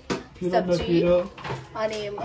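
People talking around a table, with a single click of metal serving tongs against a dish at the very start.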